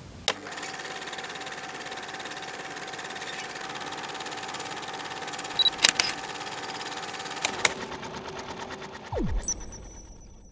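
Sound design for a TV channel's logo sting: a steady mechanical whirring with a fine rapid ticking, broken by a few sharp clicks, then a quick falling sweep and a bright high ringing chime near the end.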